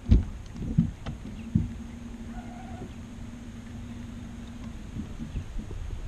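Heavy thumps on a bass boat's deck as anglers move around and handle a landing net, three of them in the first second and a half, the first the loudest. A steady low hum runs beneath them for about four seconds, with a few lighter knocks near the end.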